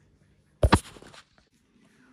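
A short, loud knock about half a second in, two hits close together, with near silence around it.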